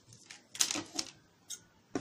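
Metal scissors clicking as their blades open and close, with a quick cluster of sharp snips about half a second in and single clicks later, as they are brought up to cut folded cotton fabric.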